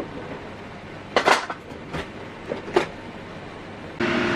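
A steel pot of water with ginger and brown sugar boiling on a stove: a steady hiss with a few short knocks or pops, the first about a second in and others near three seconds.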